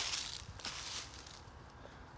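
Faint rustling and crunching noise, dying away about a second and a half in and leaving a low steady hiss.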